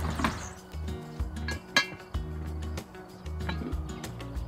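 A metal spoon clinking against a cast-iron pot while a stew is stirred, over background music. The sharpest clink comes just before two seconds in.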